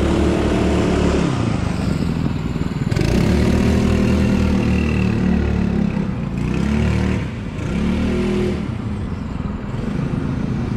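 Rotax two-stroke kart engine running while the kart sits still, its pitch rising and falling several times as the throttle is blipped.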